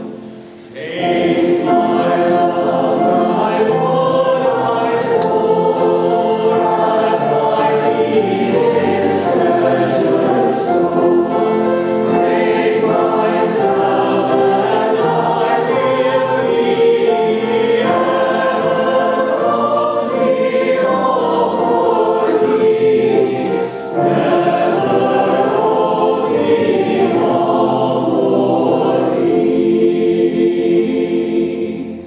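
A large choir of young voices singing in parts, held phrases moving from chord to chord, with a short break for breath just after the start and another about 24 seconds in.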